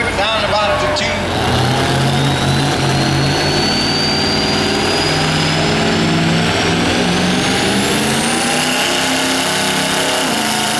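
Diesel pickup truck engine working hard under full load while pulling a weight-transfer sled, with a thin high whistle that climbs steadily in pitch over several seconds, typical of the turbocharger spooling up.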